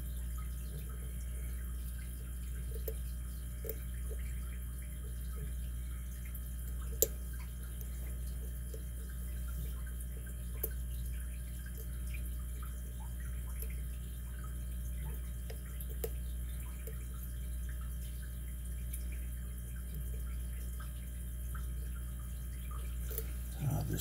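Faint, scattered clicks of a lock pick working the pins of a brass pin-tumbler lock cylinder held under tension, with one sharper click about seven seconds in, over a steady low hum.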